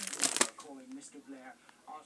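Plastic pocket pages of a trading-card binder crinkling as a page is turned, loudest in the first half second, then fading to a faint rustle.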